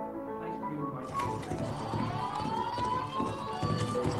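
Playback of a synthesized multi-source sound scene from a sound-event dataset: overlapping steady tones and a slowly gliding pitch, with repeated low thuds. Like a horse galloping, the thudding is an unlabelled footstep-like event.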